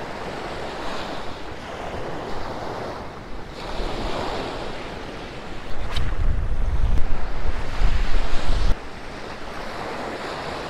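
Small surf washing up onto a sand beach, with wind on the microphone. About halfway in, a louder low rumble on the microphone takes over and then stops abruptly near the end.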